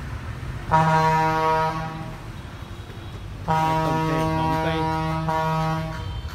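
A horn sounding two long, steady, single-pitched blasts: the first begins suddenly just under a second in and lasts about a second before fading, the second begins about halfway through and holds for about two and a half seconds.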